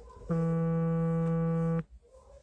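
A steady, low electronic buzzing tone, held at one unchanging pitch for about a second and a half, that starts and stops abruptly.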